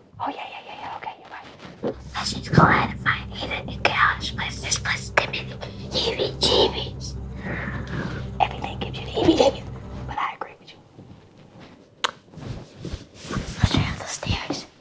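Hushed whispering voices, with a low steady drone underneath from about two seconds in until about ten seconds in.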